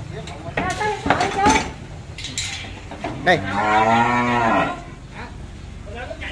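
A cow moos once, about halfway through: one long call of about a second and a half that rises and then falls in pitch.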